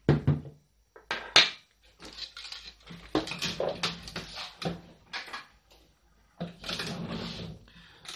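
Plastic parts handled on a wooden tabletop: a couple of sharp knocks in the first second and a half as a 3D-printed plastic jig is set down, then stretches of scraping and rubbing as a plastic power socket is picked up and fitted into the jig.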